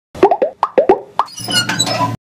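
Animated-logo sound effect: a quick run of about seven pitched pops, then a short twinkling chime of several bright tones.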